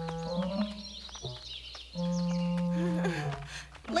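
Background score of long, held low instrumental notes in two slow phrases, each ending with a step down in pitch, with faint high twittering above.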